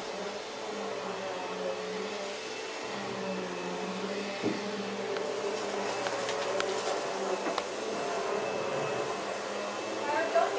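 A steady machine-like hum over hiss, with a few light clicks about halfway through.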